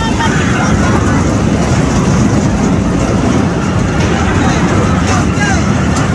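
Loud steady rumble of a Tilt-A-Whirl ride in motion, heard from inside a spinning car, with faint voices over it.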